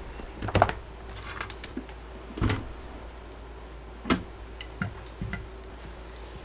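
Handling noise on a workbench: about five separate knocks and clatters as a silicone repair mat is spread out and equipment is set down on it, the loudest about half a second in and another about two and a half seconds in.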